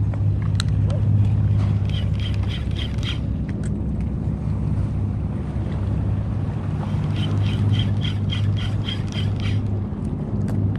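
Steady low hum of a boat engine running. Twice, a run of quick, even, light ticking rides over it, about four ticks a second.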